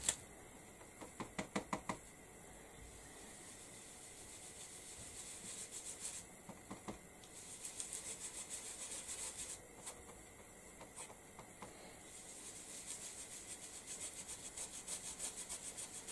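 Oval ink-blending brush dabbing and swirling ink through a stencil onto card: a quick run of light taps near the start, then faint, fast scrubbing strokes in bouts.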